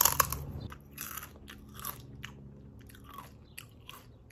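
Doritos tortilla chip being bitten and chewed close to the microphone: a loud crunch at the first bite, then a run of irregular, fainter crisp crunches, roughly three a second.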